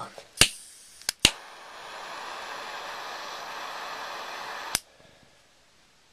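A lighter clicked three times, then a steady hiss of gas and flame for about three and a half seconds, cut off by another click.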